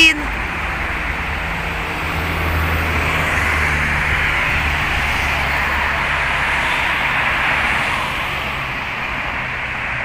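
Road traffic on a busy city street: cars going past, their engine and tyre noise swelling for several seconds and then easing off.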